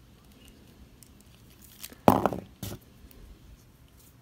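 Small plastic action-figure parts being handled and pressed as a holster piece is worked onto the figure: faint ticks and rubbing, with a louder clack about two seconds in and a shorter knock just after.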